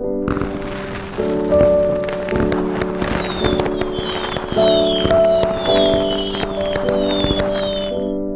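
Dense crackling and popping like small fireworks, with short falling high whistles coming about twice a second from the middle on, over soft piano music. The crackle cuts off abruptly at the end.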